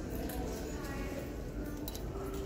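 Indistinct background voices and faint music, with a couple of sharp clicks near the end.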